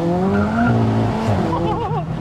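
Big-turbo, 515 bhp MK5 Golf GTI's turbocharged four-cylinder engine pulling hard, heard from inside the cabin, its note climbing steadily in pitch. About a second and a half in, the pitch drops sharply as it shifts up a gear.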